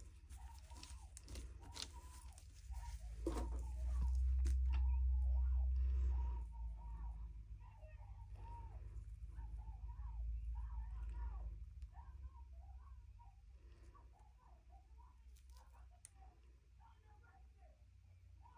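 Faint chirping calls of a bird, repeating many times, over a low rumble that swells loudest from about three to six seconds in and again around ten seconds in.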